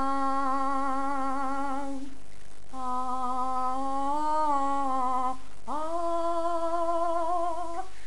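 A woman singing a cappella, without words: three long held notes with vibrato, broken by short pauses for breath.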